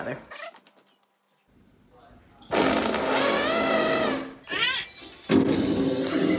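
A toddler blowing raspberries with his lips pressed against a glass sliding door: one long buzzing blow of about a second and a half, a short one right after, and another starting near the end.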